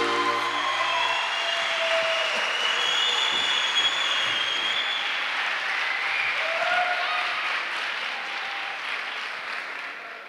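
Audience applauding as the final chord of the trikitixa accordion music dies away in the first second; the applause thins out slowly toward the end.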